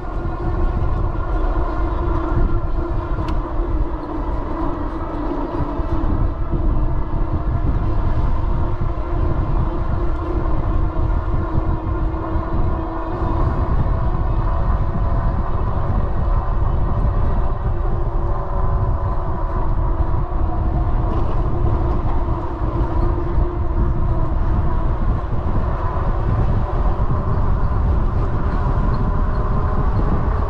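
Electric bike motor running with a steady multi-tone whine that drifts slowly in pitch, under heavy wind rumble on the microphone while riding.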